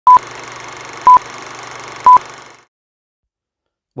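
Old film-leader countdown sound effect: three short, loud beeps exactly one second apart, laid over a steady hiss and low hum of old projector and film noise. The noise fades away after about two and a half seconds and then stops.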